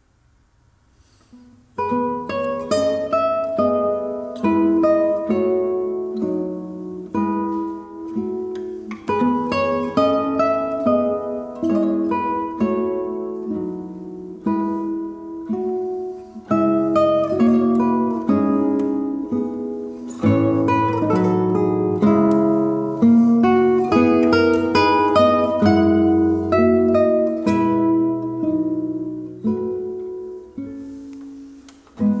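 A duet of two classical guitars begins about two seconds in with plucked notes, playing a slow, calm lullaby.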